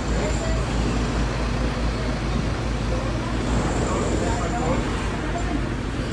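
Steady low rumble and hiss of background noise, with faint voices talking around the middle.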